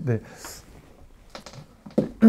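A few light clicks and taps, with a brief soft hiss about half a second in.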